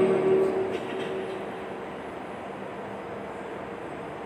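A held chanted note of Quran recitation fading out in the first second with a reverberant tail, leaving a steady hum of air conditioners and ceiling fans.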